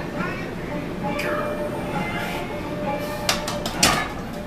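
Loaded barbell racked onto the steel uprights of an incline bench: a quick run of four or five metal clanks near the end, the last the loudest, over music playing in the background.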